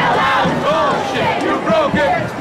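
Crowd of protesters shouting, many raised voices overlapping.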